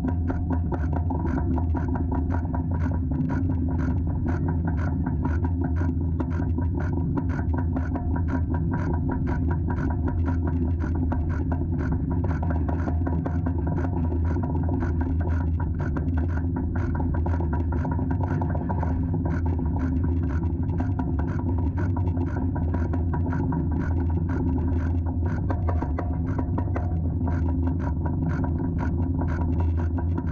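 Kraken's B&M floorless coaster train climbing its chain lift hill: a steady low mechanical rumble with rapid, regular clicking from the chain and anti-rollback dogs.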